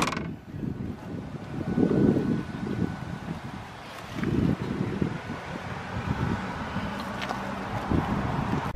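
A Jeep Compass liftgate slams shut with a single thud at the very start. It is followed by low, uneven gusts of wind rumbling on the microphone.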